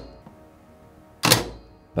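Two dull thunks, a short one right at the start and a louder one about a second and a half in, over faint background music.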